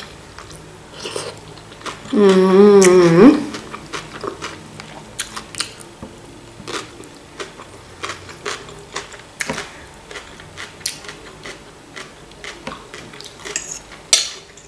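A person chewing food with wet mouth clicks and smacks. About two seconds in there is a loud, drawn-out hum with a wavering pitch that lasts about a second.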